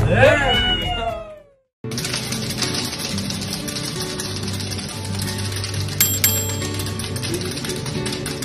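Hard candy rods being chopped into small pieces with blades on a steel bench: a fast, dense run of cracking clicks, starting about two seconds in, with background music underneath.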